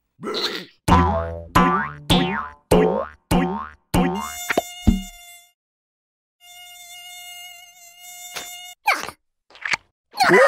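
Cartoon mosquito buzzing: a thin high whine that holds steady with a slight waver, starting about four seconds in and running until nearly nine seconds, with a short break around six seconds. Before it comes a quick run of about six short falling-pitch sounds, each with a low thud.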